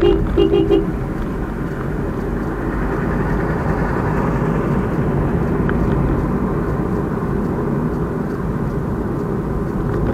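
A car horn sounds in a few quick short toots right at the start, then steady road and engine noise is heard from inside a moving car's cabin.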